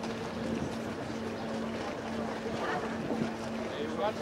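Steady low hum of a ferry's machinery, heard on its open deck, with wind on the microphone.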